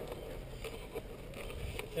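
Faint rustling and a few light knocks as a handheld camera rubs against the fabric of a racing suit.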